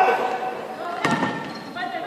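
A basketball thuds once on the court about a second in, ringing out in the echo of a large sports hall.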